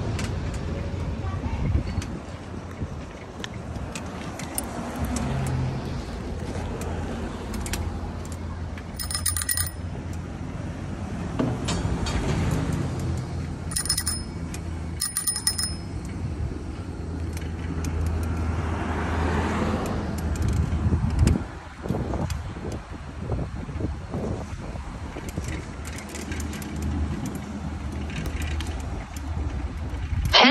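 Bicycle riding over a paved sidewalk with a steady rumble of tyres, wind and street traffic, and a bicycle bell rung three short times about a third and halfway through.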